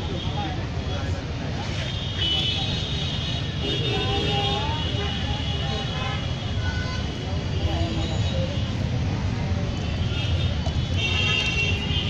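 Busy roadside street ambience: a steady low traffic rumble with voices of passers-by around it.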